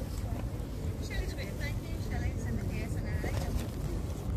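Outdoor background sound: a steady low rumble with faint voices in the distance, and a run of high, quick chirps through the middle.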